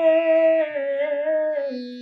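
A woman singing a ghazal, holding one long note at the end of a line. The note steps down in pitch twice and fades away near the end.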